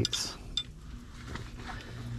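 A few faint, short metallic clinks from steel adjustable wrenches being handled at a propane hose fitting.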